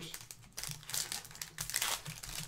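Plastic wrapper of a Topps Chrome Update baseball card pack crinkling in the hands: a run of crackles that thickens about half a second in.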